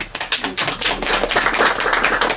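Audience applauding: many hands clapping in a dense, steady stream.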